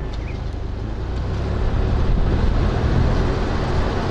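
Wind rushing and buffeting over a GoPro's microphone held at the open window of a moving four-wheel drive, with a low rumble of car and road noise underneath. It grows louder over the first couple of seconds, then holds steady.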